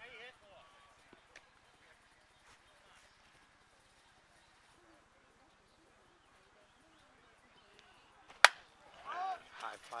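A single sharp crack of a softball bat hitting the ball about eight and a half seconds in, putting a fly ball into play.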